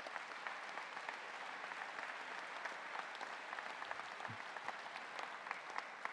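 Audience applauding: many hands clapping in a steady, even patter.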